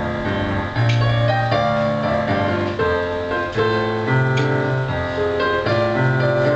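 Yamaha digital piano played in a slow instrumental passage: held chords over a low bass note that changes about every second or so.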